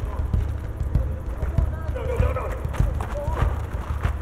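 Voices over a run of dull, low thuds coming two or three a second at uneven spacing.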